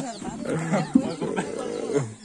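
Several people talking quietly in the background. A drawn-out, steady-pitched call or voice is held for about half a second, starting a little over a second in.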